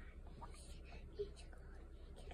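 Faint soft squishing and smacking as a one-year-old's hands work a whipped-cream cake and bring it to the mouth, over a low steady hum, with a brief soft squeak about a second in.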